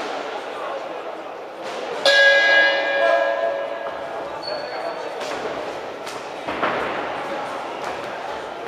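Boxing ring bell struck once about two seconds in, ringing out and fading over about two seconds, signalling the start of the round. A background murmur of voices runs throughout, with a few short knocks later on.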